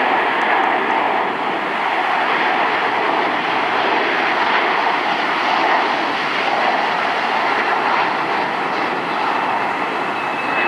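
Jet airliner climbing out just after takeoff, heard from afar: its engines at takeoff power make a steady rushing noise.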